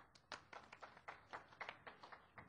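Faint, sparse clapping from a few people in the audience: a string of scattered, uneven claps.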